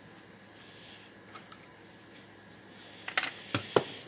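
Soft rustling of items being handled on a workbench, then a quick cluster of sharp hard-plastic clicks and knocks about three seconds in as a plastic primer tray is picked up and moved.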